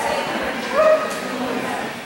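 A dog gives one short, high yip about a second in, over a background of crowd chatter.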